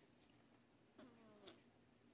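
Near silence, broken about a second in by one faint, short meow from a tiny sick kitten, falling in pitch.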